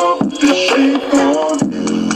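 A pop song with sung vocals, played through a small homemade Bluetooth speaker.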